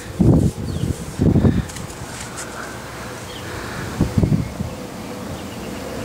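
Gusts of wind buffeting the microphone outdoors: a few short, low rumbling bursts, near the start, after about a second and again about four seconds in, over faint steady outdoor background.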